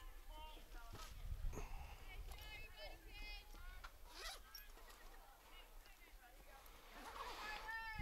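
Faint, distant voices of players and spectators calling out, with a few soft knocks.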